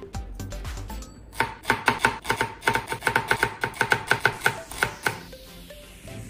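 Kitchen knife chopping green onion on a plastic cutting board: a quick, even run of strokes, about six a second, starting a little over a second in and stopping about five seconds in. Faint background music runs under it.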